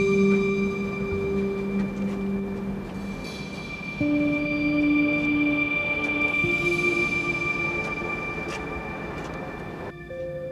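Background score of sustained synthesizer chords, with the held notes changing about four seconds in, over a steady thin high tone.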